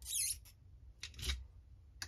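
Brass cartridge case being handled at a bench priming tool and reloading press: a short metallic scrape at the start, then a single light clack just over a second in.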